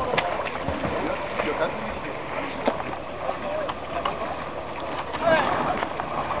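Indistinct voices calling and talking over steady outdoor noise, with splashing from swimmers doing front crawl in open water.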